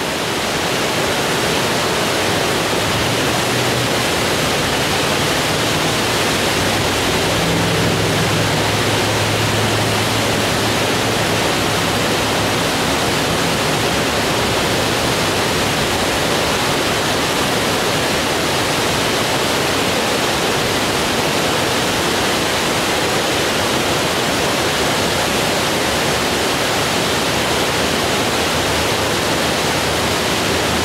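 Steady rushing of water spilling over a concrete low-head dam, an even, unbroken noise.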